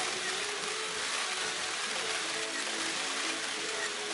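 Background music playing under a dense, steady patter of many press camera shutters firing at once.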